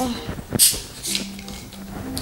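The screw cap of a bottle of lemonade twisted open, with a short sharp hiss about half a second in.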